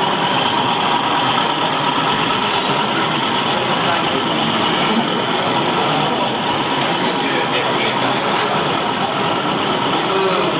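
Steady babble of many voices in a large, busy hall, with no single speaker standing out.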